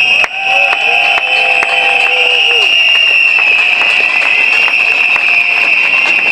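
A protest crowd blowing whistles: a shrill, steady chorus that breaks off suddenly near the end. Lower horn-like tones fade out a little under three seconds in, and scattered sharp clicks run through it.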